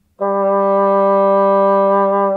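A bassoon playing one steady, sustained note that begins a moment in and is held at an even pitch and level. It demonstrates the tone of a relaxed bassoon embouchure, with the upper lip placed up to the reed's first wire and a little lip support.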